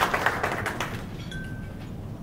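Audience applause, a patter of many hands clapping that fades out about a second in.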